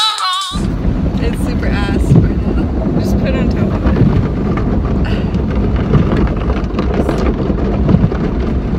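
A song with singing cuts off half a second in, giving way to a steady low rumble inside a car cabin, with brief faint talking.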